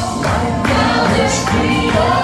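Live gospel worship music: a man leading the song on a microphone with a group of backing singers and a band, hands clapping along.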